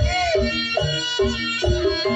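Live jaranan accompaniment music: a wavering lead melody with bending notes over steady hand-drum beats.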